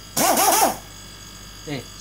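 A man laughs briefly, a short breathy burst of a few quick rising-and-falling notes, right after fumbling his words; a short spoken 'eh' follows near the end. A faint steady high hum runs underneath.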